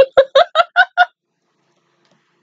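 A woman laughing: six quick, pitched bursts of laughter in the first second or so.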